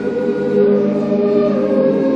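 Boys' choir, with men's voices beneath, singing a loud sustained chord; one upper part steps up to a higher note about half a second in.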